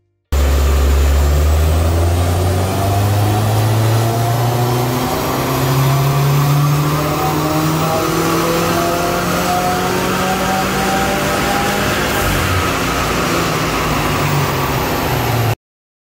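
Subaru WRX's turbocharged flat-four engine pulling under load on a chassis dynamometer, its pitch climbing slowly and steadily through the revs in one long run. It starts abruptly and cuts off suddenly near the end.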